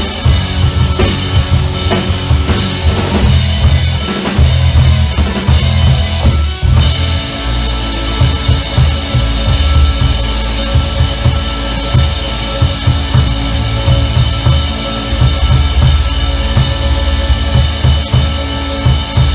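Live rock band playing an instrumental passage on electric guitars, bass guitar and drum kit, with no vocals. The music breaks off briefly about six and a half seconds in, then comes back with held guitar chords over the drums.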